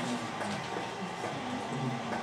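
Classroom room noise: a steady hum and hiss with faint, indistinct low voices murmuring.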